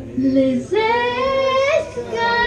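Woman singing: a short note, then a long held note of about a second that bends slightly upward at its end.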